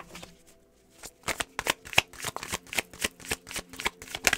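A deck of tarot cards being shuffled by hand: a quick run of card snaps and flicks that starts about a second in.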